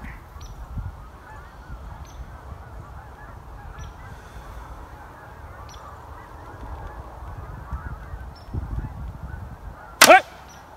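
A flock of geese honking continuously, with wind rumbling on the microphone.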